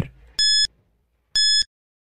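Countdown timer beeping: two short, high electronic beeps about a second apart.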